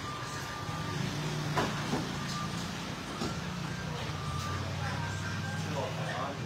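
Steady low machine hum, with a few faint knocks and several short, thin high tones over it.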